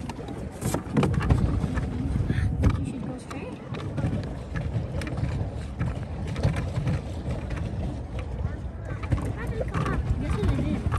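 Water sloshing and splashing around a moving pedal boat, with a steady, uneven low rumble of wind on the microphone and scattered small knocks.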